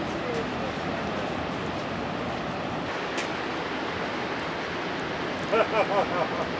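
Steady rushing of waterfalls pouring into a lake, with a few short pitched calls near the end.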